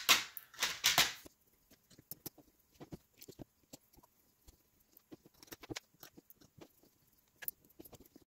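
Hands handling a 3D-printed bracket and small M3 screws at a NEMA 17 stepper motor: a short clatter in the first second, then sparse faint clicks and ticks as the screws are set in place.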